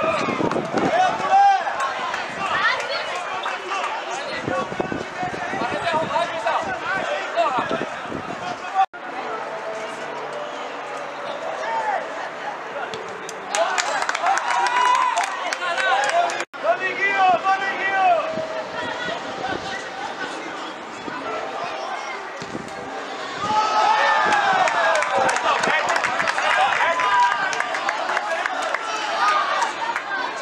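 Many voices shouting and calling over each other on a football pitch, with louder bursts of shouting in the middle and over the last several seconds. The sound cuts out sharply twice for an instant.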